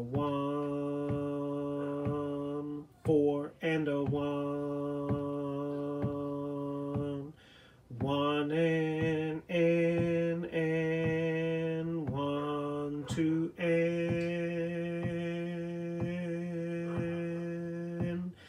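A man singing a bass-range line on long held notes, each lasting a few seconds with short breaks between, stepping up in pitch about halfway through, over a metronome clicking a little under twice a second.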